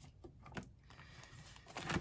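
Faint handling sounds: a few light clicks and rustles as a plastic washi tape card holder is closed and picked up, mostly in the first second.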